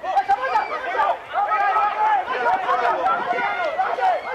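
Several voices shouting and calling over one another during open play in a rugby match, with a few sharp knocks among them.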